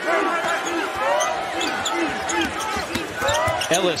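Basketball sneakers squeaking again and again on a hardwood court, with a ball being dribbled, during live play.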